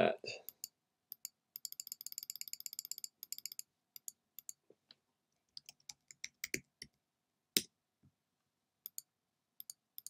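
Computer keyboard and mouse clicks: a quick run of key taps about a second and a half in, then scattered single clicks, one sharper click late on, and another quick run of taps at the very end.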